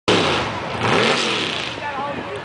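Mud bog truck's engine revving as it churns through a mud pit, the pitch rising and falling repeatedly, with spectators' voices mixed in.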